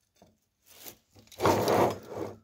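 Rubbing and handling noises as fingers work a bundle of wires at the end of a braided metal cable shield: a few soft, brief rubs, then a louder rustling rub about one and a half seconds in.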